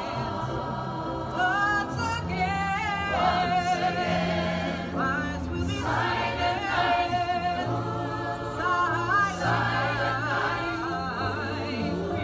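A choir singing held, wavering notes over low accompaniment notes that change every second or two.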